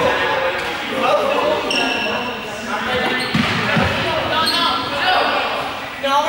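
Many young people's voices and shouts echoing in a large sports hall, with rubber balls thudding on the hard floor now and then.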